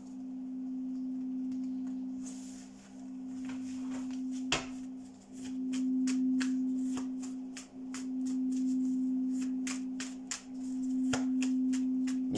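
Singing-bowl drone music: two steady low tones that swell and fade about every two to three seconds, with a higher tone joining about halfway. Faint clicks of a tarot deck being shuffled by hand sound over it.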